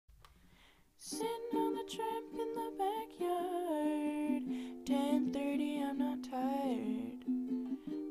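Ukulele strumming chords, starting about a second in after a brief near-quiet moment.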